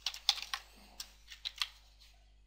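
Computer keyboard typing: a string of separate, irregularly spaced keystrokes.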